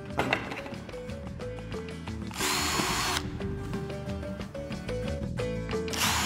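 A cordless drill spins a twist bit into a wooden board in one short burst of under a second, about halfway through, with a high motor whine. A second burst starts right at the end, over steady background music.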